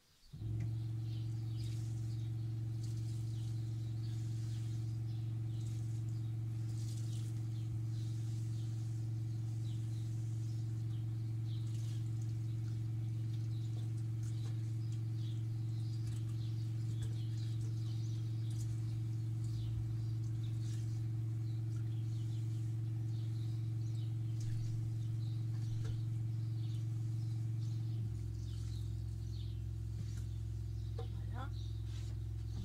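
Camper's electric water pump humming steadily while the kitchen tap runs, with faint splashing of water in the sink. The hum starts suddenly right at the start and shifts slightly in tone near the end.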